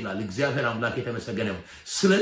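Speech only: a man preaching, his voice breaking off briefly near the end.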